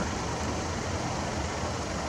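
Car engine idling, a steady low rumble with an even hiss over it.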